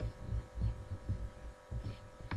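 Soft, irregular low thumps, several a second, over a steady electrical hum.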